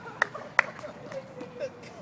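Faint voices of people talking nearby, broken by two sharp clicks within the first second.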